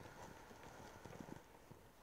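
Near silence: faint room tone with a few soft, low knocks clustered about a second in.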